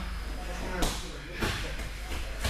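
Two sharp slaps or knocks, about half a second apart.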